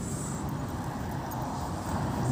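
Steady road and engine noise of a car driving slowly, heard from inside the cabin.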